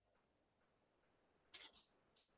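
Near silence: faint room tone, with one brief, faint hiss-like sound about a second and a half in.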